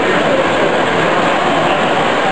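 Hornby O gauge tinplate model train running along tinplate track: a steady running noise of its wheels and coaches on the rails.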